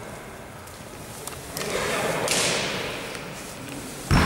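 Gym sounds during a basketball game in a large hall: a few scattered knocks and clicks, with a brief swell of rushing noise about two seconds in.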